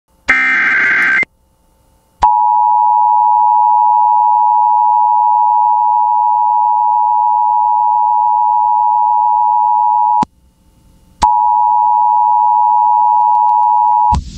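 Emergency Alert System broadcast: a short burst of SAME digital header data, then the EAS two-tone attention signal held steady for about eight seconds, breaking off for a second and resuming for about three more. It signals that a Flash Flood Warning is about to be read.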